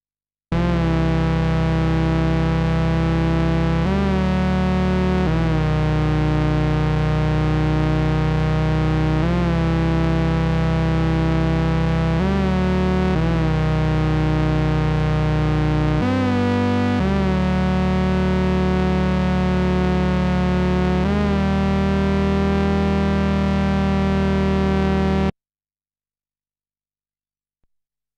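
Korg monologue monophonic analogue synthesizer playing a slow line of long, held low notes at an even level, the pitch changing about eight times with a slight bend into each new note. The sound stops abruptly near the end.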